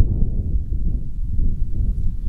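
Wind blowing across the microphone: a steady, uneven low rumble.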